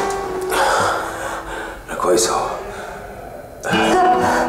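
Soft film score with plucked guitar and held notes, under breathy gasps and heavy breathing, with a sharp gasp about two seconds in.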